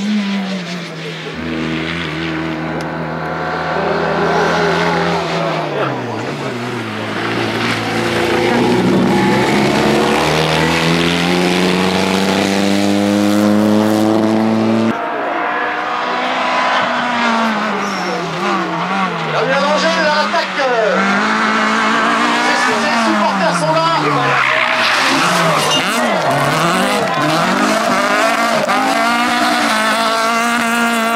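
Rally car engines at full throttle on a tarmac special stage. In the first half one car holds long rising pulls broken by upshifts; after an abrupt cut about halfway, a Renault Clio rally car's engine pitch swings up and down every second or two through gear changes and lifts.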